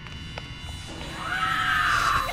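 A loud, shrill shriek starting about a second in, rising in pitch, holding, then dropping away as it ends, over a low background rumble.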